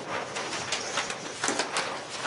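A quick run of short rustles and clicks, with the sharpest strokes clustered about three quarters of the way through.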